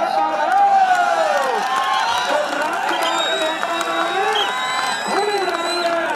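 Crowd of spectators shouting and cheering, many men's voices overlapping.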